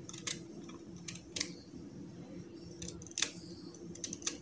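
Small kitchen knife slicing a bitter gourd held in the hand, crisp irregular cuts through the firm, ridged flesh, the loudest about a second and a half in and a little after three seconds.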